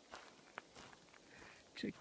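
Faint footsteps: a few soft, short steps in the first second over quiet background hiss.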